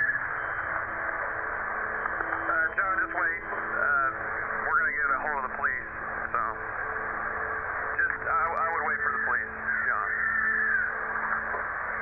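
Voices talking over a two-way radio, muffled and thin, with a steady low hum and hiss underneath.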